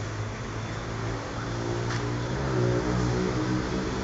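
A motor or engine running with a steady low hum that grows a little louder past the middle.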